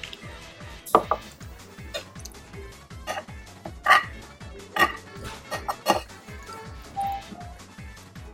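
Eating sounds from a plate of curry and rice: about ten sharp clinks and smacks from spoon and mouth, loudest about a second in and about four seconds in. They play over background music with a steady beat.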